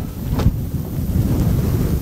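Low, steady rumble of microphone noise, with a brief knock about half a second in.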